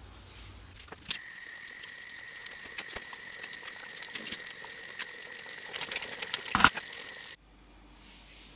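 Plum jam at a rolling boil in a wide stainless-steel preserving pan: many small pops and spits over a steady hiss and a thin high whine, with one louder burst shortly before it cuts off abruptly near the end.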